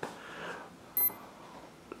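Brushless motor giving a single short, high-pitched beep through its ESC about a second in. It repeats every couple of seconds: the ESC gets no throttle signal and will not arm.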